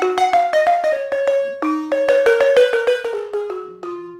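West African balafon, wooden keys over gourd resonators, played with two mallets: a quick stream of struck, ringing notes in runs that fall in pitch, growing sparser and softer near the end.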